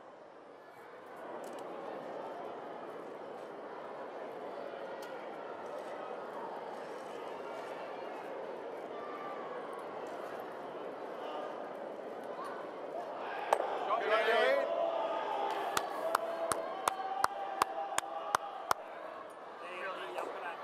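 Arena crowd murmuring and chattering while a curling stone travels down the sheet, swelling into a burst of voices about two-thirds of the way through. It is followed by a run of sharp clicks, roughly three a second.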